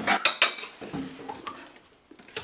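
Cutlery and crockery clinking at a kitchen table while yogurt cups are handled: two loud sharp clinks in the first half second, then lighter scattered clicks that die away.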